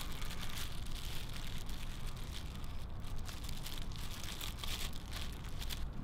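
Faint rustling and crinkling, with scattered light crackles, as gloved hands work a wet resin-impregnated casting sock up the leg and against a plastic wrap over the knee.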